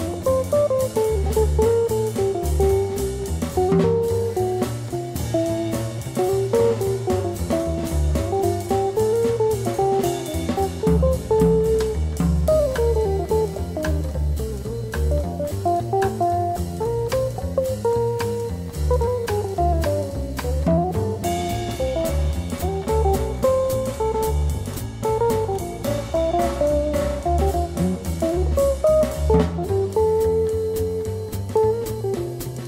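Instrumental swing passage from a small Italian swing band: a guitar carries a quick melodic line over drum kit and double bass keeping a steady beat.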